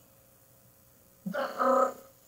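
A woman's voice imitating a drum roll, a short rolled 'brrr' trill lasting under a second near the end.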